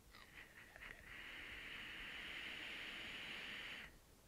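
Long draw on an Aspire Atlantis sub-ohm tank fired at 30 watts: a few light crackles from the coil, then about three seconds of steady hiss as air and vapor are pulled through the tank, which cuts off sharply near the end.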